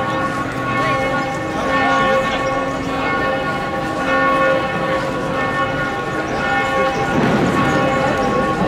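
Church bells of Barcelona Cathedral ringing, their long tones overlapping and hanging in the air.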